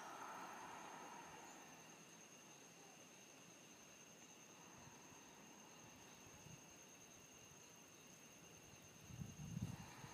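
Near silence. A soft breath, an exhale, fades out over the first second or two, and two faint steady high-pitched tones run underneath.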